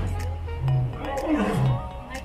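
Lion roaring in a series of deep grunts about once a second, some sliding down in pitch, with background music over it.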